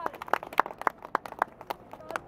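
Applause from a small crowd dying away to a few single hand claps, about three a second, which stop near the end.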